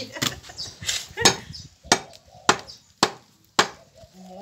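Heavy cleaver chopping fresh beef on a wooden tree-stump chopping block: about six sharp strikes, a little over half a second apart.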